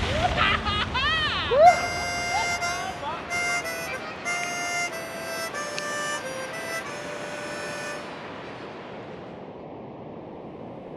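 Harmonica playing a short phrase: a few notes bent upward, then a series of held notes that fade out about eight seconds in.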